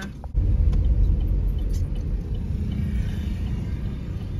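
Steady low rumble of a car heard from inside its cabin, starting suddenly about a third of a second in.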